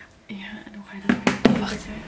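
Quiet speech and whispering, with a few sharp clicks in quick succession just after a second in.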